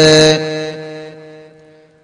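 A man's chanted supplication ending on a held note that hangs on with echo and fades away over about a second and a half.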